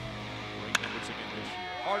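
A single sharp crack of a metal baseball bat striking a pitched ball, hit hard, about three quarters of a second in, over steady background music.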